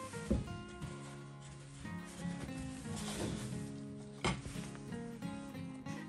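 Soft background music of plucked guitar notes, with two brief knocks: one just after the start and one about four seconds in.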